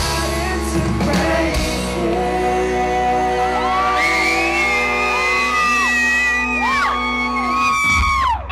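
Live pop-rock band playing with a singer, heard from within the audience, with long held sung notes in the second half. Audience whoops and shouts rise over the music, which carries a heavy, boomy low end.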